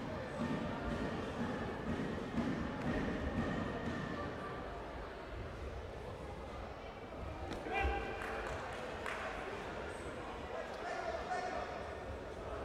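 Echoing sports-hall din of indistinct voices and calls, with a few sudden thuds, the loudest about two seconds in and another around eight seconds.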